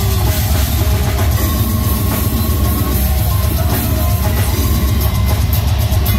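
A brutal slam death metal band playing live, with downtuned guitars, bass and a drum kit. The music is loud and continuous, with a heavy low end.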